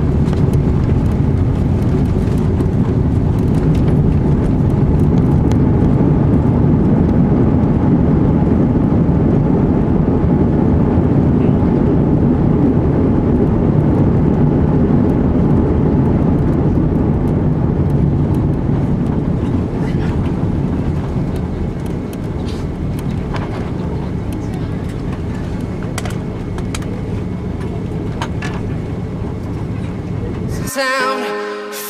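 Cabin noise of an Airbus A330 on its landing rollout, spoilers up: a heavy engine and runway rumble that swells over the first half, then eases off as the airliner slows, settling to a lower rumble from about two-thirds in.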